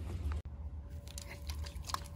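Handling noise from a hand-held phone being swung around: a low rumble with light crackles and clicks. It breaks off abruptly about half a second in, then continues more quietly with a sharp click near the end.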